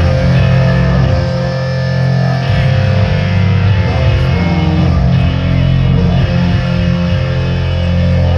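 Three-piece rock band playing live without vocals: electric guitar over bass guitar and drums, loud and steady.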